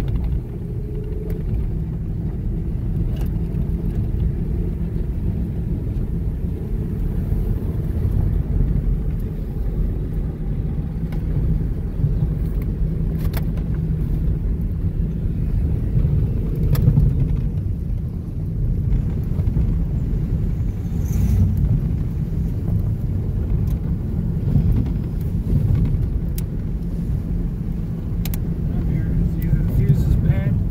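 Toyota Camry's cabin on a gravel road: steady low road and tyre rumble with a few short clicks, carrying the drone of a wheel bearing that the driver thinks needs replacing.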